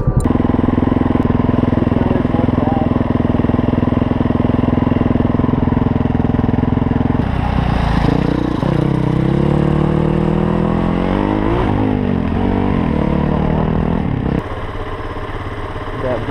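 Motorcycle engine running steadily, then revving up and down through the gears for several seconds from about seven seconds in, dropping to a lower, quieter note near the end.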